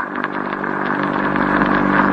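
A steady, even drone made of several held low tones, with no change in pitch.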